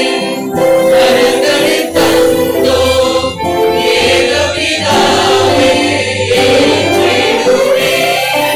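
Church choir singing a hymn, with a low bass accompaniment that comes in about two seconds in and drops away near the end.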